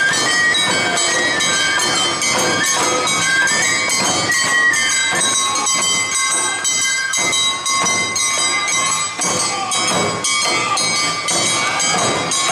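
Awa odori marching band playing its two-beat dance music. A shinobue bamboo flute carries a stepping melody over shamisen and taiko drums, with bright ringing metal beats from kane hand gongs.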